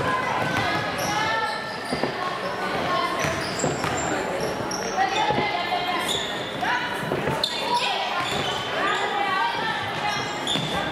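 A basketball bouncing on a hardwood gym floor with short knocks, along with brief high sneaker squeaks and voices calling out, all echoing in the gym.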